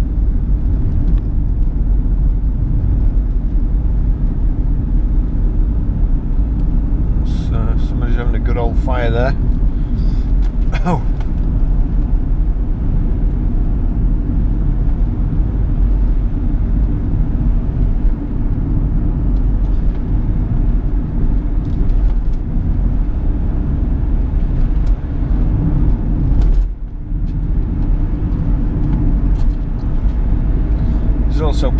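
In-cabin road and engine noise of a 2010 Chevrolet Captiva's 2.0 VCDi four-cylinder turbodiesel under way, a steady low rumble of engine and tyres. The noise dips briefly near the end.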